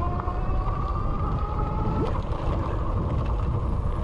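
Electric e-bike motor whining under high pedal assist, its whine rising slightly in pitch as the bike speeds up and fading about two seconds in, over a loud steady rumble of wind on the microphone and fat tyres on a dirt trail.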